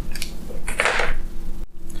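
Handling noise as small wire brushes and a toothbrush are laid down on a cardboard sheet: a few light taps and a short scratchy rustle about a second in, over a low steady hum.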